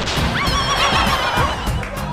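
A horse whinny sound effect over music, added as a comic sting after a punchline.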